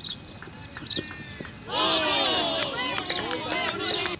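Several young cricket fielders shouting together, loud and overlapping, starting about two seconds in after the ball is bowled. Through the first half, short high chirps repeat about once a second.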